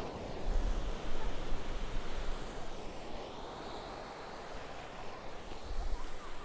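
Ocean surf washing onto a sandy beach, a steady rushing noise, with wind buffeting the microphone in low gusts about half a second in and again near the end.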